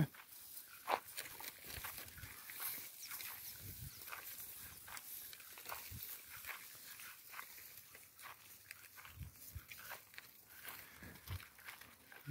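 Scattered footsteps and rustling in dry grass, faint, with a sharper click about a second in and a few soft low thumps later.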